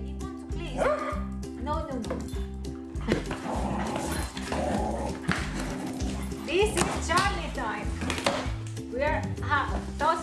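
Small dog barking and whining in short bursts over steady background music, with a cluster of calls near the end. Cardboard box flaps are handled and rustled in the middle.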